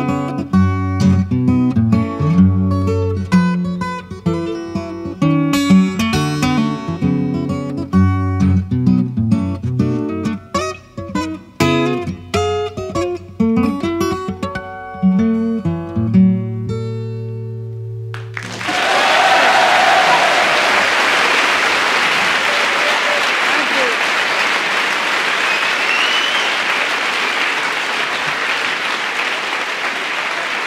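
Acoustic guitar playing the closing bars of an instrumental, ending on a held low chord about sixteen seconds in. Audience applause then breaks out and continues.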